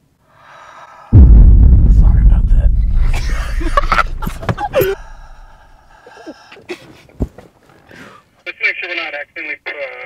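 A man breathing heavily into a handheld walkie-talkie held at his mouth. A loud breathy rush with a deep rumble starts suddenly about a second in and fades away over about four seconds.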